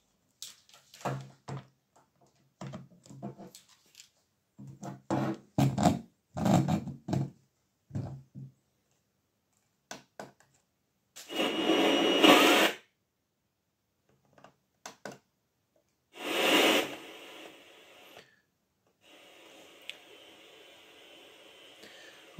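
Knocks and clicks from handling a Blaupunkt CLR 180 WH clock radio and pressing its buttons. Then two loud bursts of static hiss come from its speakers as it is switched on and the volume is turned. A steady faint hiss follows near the end: the radio is on but not tuned to a station.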